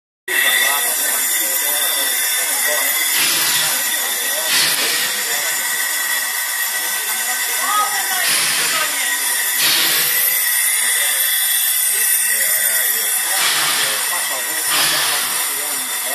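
Narrow-gauge steam tank locomotive standing with steam hissing steadily. Pairs of louder steam puffs come about every five seconds, with voices in the background.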